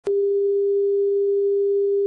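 Steady single-pitch line-up test tone accompanying a television test card, mid-pitched and unwavering, switched on with a click at the very start.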